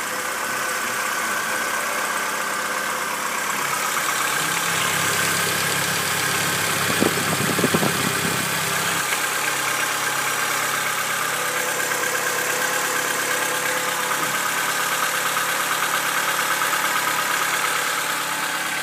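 Car engine idling steadily, heard close up in the open engine bay, with a steady hiss above the hum. A brief cluster of clicks comes about seven seconds in.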